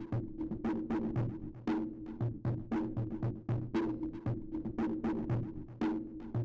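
Universal Laser Systems VLS 6.60 laser cutter engraving maple ply: the motor-driven head shuttles back and forth, giving an uneven run of sharp knocks, several a second, with short low hums between them.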